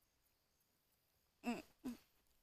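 Near silence, then about a second and a half in a woman gives two short vocal sounds, the first falling in pitch.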